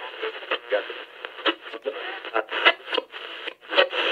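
Tinny, radio-like filtered audio with the bass cut away: an indistinct, crackly voice-like sound, as if heard through a small radio or phone speaker, in a break in the hip hop track. Full-range beat and bass come back right at the end.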